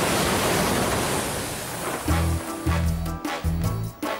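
Steady hiss of heavy rain that thins out, then music comes in about halfway: a bass line with a steady beat.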